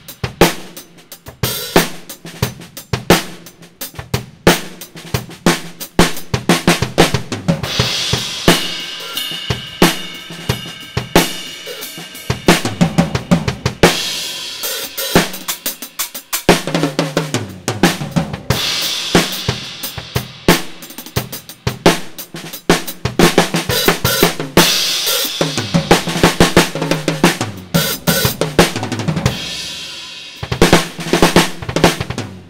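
Acoustic drum kit played continuously, a kick-and-snare groove with hi-hat and several cymbal crashes, heard through a single USB condenser microphone (Tonor Q9) set up close to the kit.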